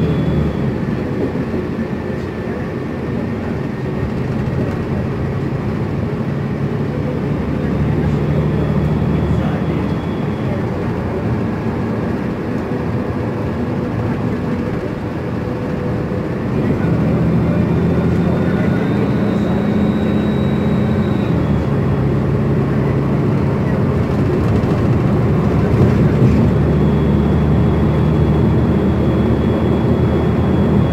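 Inside a New Flyer XN60 articulated natural-gas bus cruising at freeway speed: a steady engine and drivetrain drone with road and tyre noise, growing louder a little past halfway.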